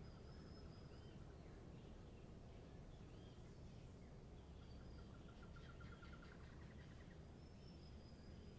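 Near silence with faint bird calls: scattered short high chirps and, about five seconds in, a rapid trill lasting about two seconds, over a low steady background rumble.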